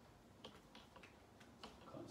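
Near silence broken by a few faint, sharp clicks: a whiteboard marker being picked up, uncapped and handled.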